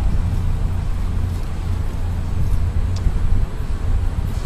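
Steady low rumble of street traffic, with a faint tick about three seconds in.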